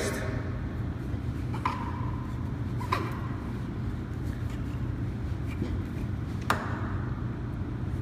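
Three light metal knocks as the stainless steel cover of a Watts 957 reduced-pressure backflow preventer is handled and slid along the valve body; the first rings briefly. A steady low hum underneath.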